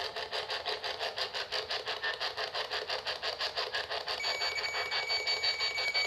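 PSB-11 spirit box sweeping AM and FM radio, a rapid, even chopping of static and radio fragments. About four seconds in, a steady high tone comes in over the sweep.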